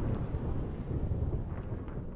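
The tail of a logo intro sound effect: a low, noisy rumble that fades away.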